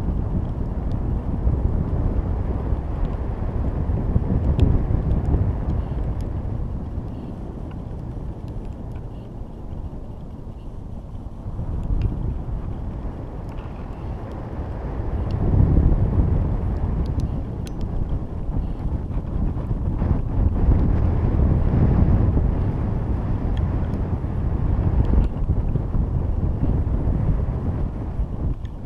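Wind noise on a GoPro camera's microphone riding up on a high-altitude balloon payload. It is a low, rough noise that swells and fades in gusts: louder about four seconds in, dipping near the ten-second mark, then rising again from about fifteen seconds.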